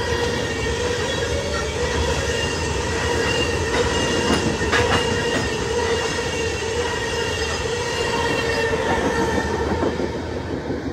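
Freight train of tank cars rolling past at close range: a steady rumble of steel wheels on rail, with a continuous wheel squeal and a few sharp clacks as wheels cross rail joints.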